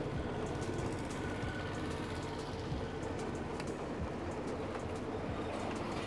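Belt-driven sugarcane juice crusher running steadily, its geared iron rollers crushing cane stalks fed between them, with a continual hum and small clicks and knocks from the gears.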